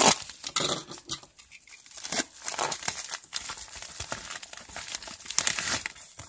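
Plastic postal mailer and small zip-lock plastic bags crinkling in irregular rustling bursts as the parcel is cut open and the bags are pulled out.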